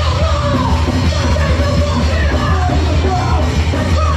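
Hardcore punk band playing live at full volume, a vocalist yelling into the microphone over bass guitar, guitar and drums.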